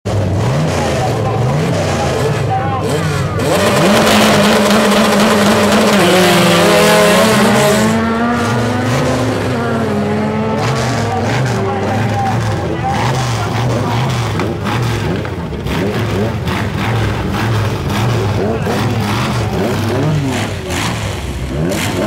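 Small four-cylinder Fiat 147 drag cars revving repeatedly at the line, then a louder launch from about four seconds in, with engine notes rising through the gears as they run down the strip.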